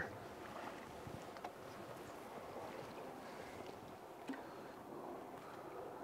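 Faint, steady water noise around a small boat on a river, with a few light ticks and knocks.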